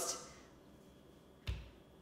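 Quiet room tone, broken about one and a half seconds in by a single short knock with a low thud, the sound of a hand set down on a stone kitchen countertop.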